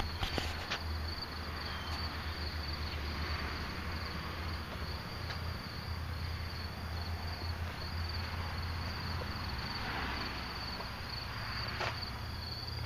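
Insects trilling steadily in one continuous high-pitched tone, over a low steady rumble.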